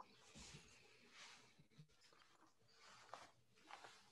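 Near silence, with faint soft rustles of small items being handled on a workbench and a small click about three seconds in.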